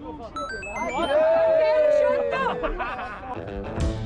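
A quick run of short electronic beeps stepping up in pitch, then a long held vocal cry that sinks slightly in pitch and is the loudest thing here, amid chatter and background music.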